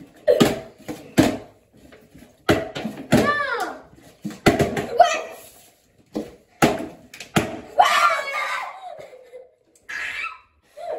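Partly filled plastic bottles being flipped and knocking down onto a table again and again, with children's excited cries and shrieks between the landings.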